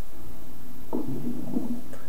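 Audio of a commercial playing on a computer, picked up from the speaker: a low pitched sound starts about a second in and lasts nearly a second, over a steady background hiss.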